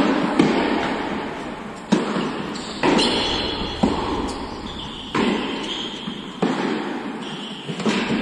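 A tennis rally: a ball struck by rackets and bouncing on an indoor hard court, about eight sharp pops roughly a second apart, each ringing on in the hall's echo.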